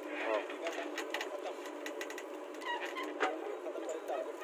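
JCB 3DX backhoe loader digging into earth with its rear bucket: its diesel engine runs steadily under hydraulic load, thinned of its low rumble, with scattered sharp clicks of soil and stones.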